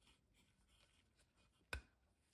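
Faint rubbing and scratching of gloved hands handling a plastic scale model car chassis, with one sharp click near the end.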